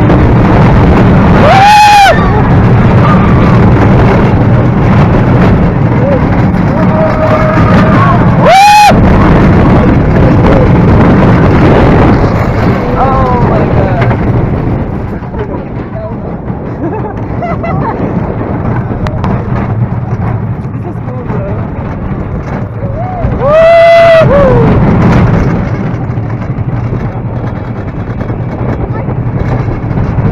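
Steel roller coaster train running flat out, with a loud steady rumble of wheels on track and rushing wind on the onboard camera. The noise eases for a while around the middle, then builds again. Riders let out short rising-and-falling screams three times: about two seconds in, around nine seconds, and near twenty-four seconds.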